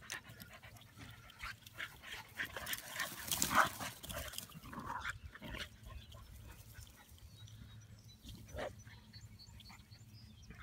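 Dogs playing and wrestling together, with a cluster of short dog vocal sounds from about two to five seconds in, loudest around the middle, and one more brief one near the end.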